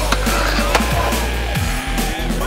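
Skateboard on a concrete-topped ledge, giving two sharp knocks within the first second, under a loud electronic music track.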